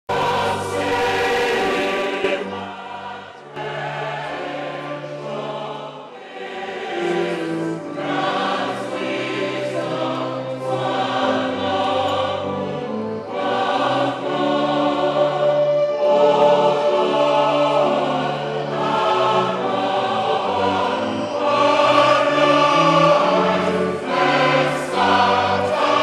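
A choir singing sacred music in long held phrases over sustained low notes, softer for a few seconds near the start.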